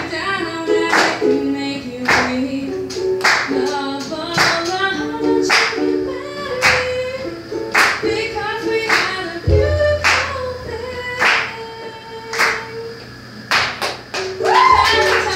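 Ukulele strummed in a steady rhythm, with a sharp accented strum about once a second, under a woman's singing.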